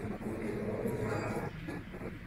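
Indistinct murmur of people's voices around a museum gallery.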